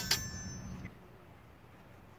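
Two longsword blades clashing right at the start, the steel ringing with a thin, high metallic tone that fades away within about a second.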